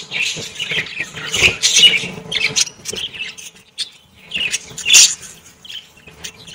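A flock of budgerigars chattering: quick strings of short, high chirps and squawks, pausing briefly before a louder squawk about five seconds in.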